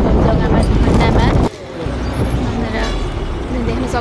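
Road and wind noise from a moving vehicle, cut off suddenly about a second and a half in. A quieter vehicle hum with voices follows.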